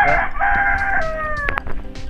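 Rooster crowing: a call that wavers at first, then a long held note that falls in pitch at the end, followed by a couple of sharp clicks.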